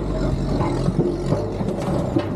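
Sherp ATV's diesel engine running steadily as the vehicle drives up onto a galvanized steel trailer, with a few light knocks near the end.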